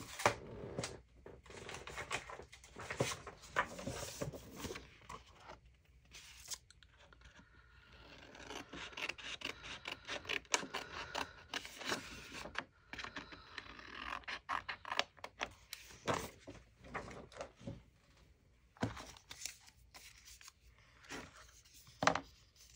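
Paper being handled and shuffled on a craft table: irregular rustling, rubbing and scraping with scattered light taps, denser about midway through.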